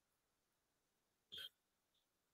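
Near silence, broken once about a second and a half in by a short, faint sound.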